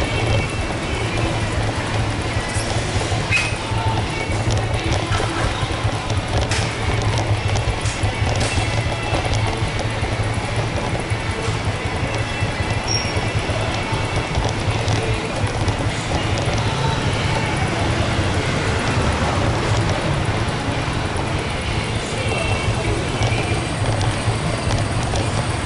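Steady background music with a continuous low hum, under faint voices and street noise.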